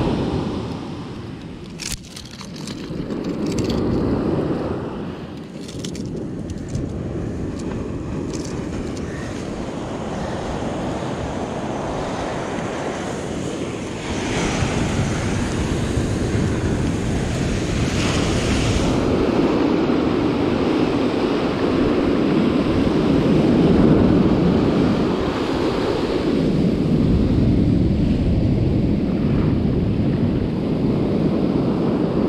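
Surf breaking and washing up a sand beach, its level swelling and ebbing, with wind buffeting the microphone. A few light clicks come in the first several seconds.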